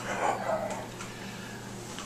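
A pause in talk: a steady low hum, with a faint short voice-like sound in the first half second.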